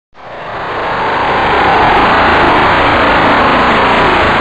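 Loud, steady rushing noise that swells up over the first second and holds: a sound effect under an opening title sequence.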